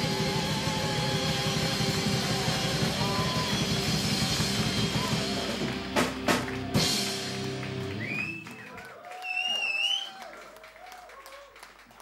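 A metal band playing live, electric guitars and drums at full volume, closing the song with three sharp hits about six seconds in. The music dies away, and the crowd cheers while someone whistles.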